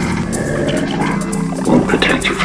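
Psytrance music in a short breakdown: the kick and bass drop back while the fast hi-hats keep running under layered synth sounds.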